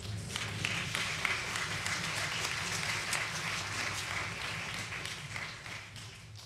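Concert audience applauding, the clapping fading away near the end.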